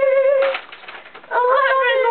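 Girls singing, holding a long note; a short breathy burst about half a second in, a brief lull, then the singing picks up again.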